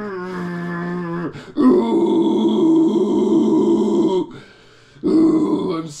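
A man's long, drawn-out straining groans, a mock meathead grunt in the voice of a muscle-bound guy on SARMs. A held groan of about a second is followed by a louder one of about two and a half seconds, and another starts near the end.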